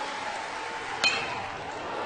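A metal college baseball bat striking a pitched ball once, about a second in: a sharp metallic ping with a short ring, over steady background crowd noise.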